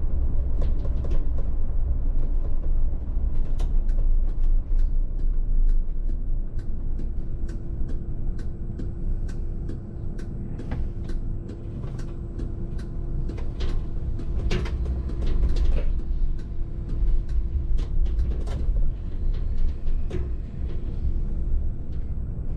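A VDL city bus driving, heard from the driver's cab: a steady low rumble of road and drivetrain. Frequent sharp clicks and rattles from the interior fittings run over it, and a steady hum sounds through the middle of the drive.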